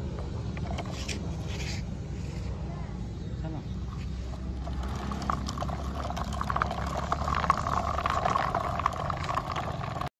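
Toy tractor's small electric motor and gears whining as it drives over paving stones pulling a mud-loaded trolley, with rapid clatter from its hard plastic wheels and trolley, starting about halfway through.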